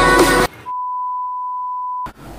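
Background music cuts off abruptly about half a second in; after a brief gap a single steady electronic beep tone sounds for about a second and a half, then stops suddenly.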